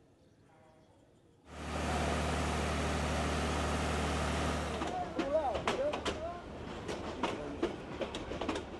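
Train at a railway station. A steady loud rumble with a deep drone begins suddenly about a second and a half in. Near the middle it gives way to a run of sharp, irregular clicks and clacks from the rolling train, with squealing tones among them.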